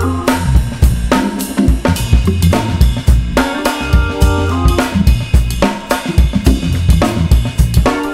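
Jazz drum kit played with sticks: a ride cymbal pattern with snare and bass drum strokes, over held chords from a keyboard backing track.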